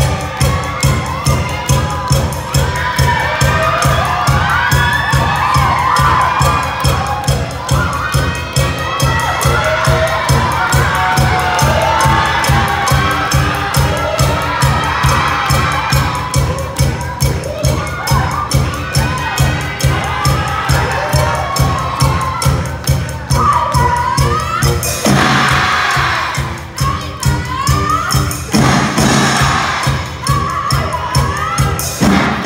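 High-school brass band members shouting and cheering together over a steady, quick drum beat, with two loud rushing bursts near the end.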